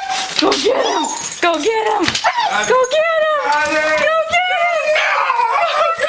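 A dog whining and whimpering in long, wavering high cries, broken by short yelps, excited at a homecoming.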